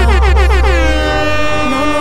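DJ air-horn effect laid over a hip-hop beat: a rapid run of short blasts, about five a second, each falling in pitch, then one longer blast that glides down and holds. The heavy bass drops back about a second in.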